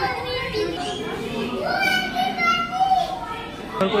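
Children talking and calling out, with one drawn-out high-pitched call about halfway through.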